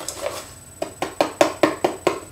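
Hand tapping the bottom of an upturned cardboard muffin-mix box to shake the dry mix out into a plastic bowl: about six quick taps in the second half, roughly five a second.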